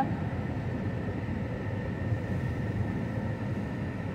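Steady low rumble of a car's engine and tyres, heard from inside the cabin while it drives slowly.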